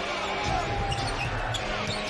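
Basketball being dribbled on a hardwood court: repeated low bounces over steady arena crowd noise.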